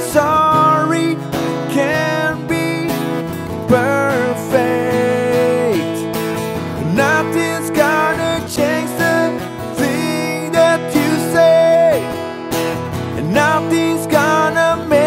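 Acoustic cover song passage without lyrics: strummed acoustic guitar with a melody line over it that slides between notes.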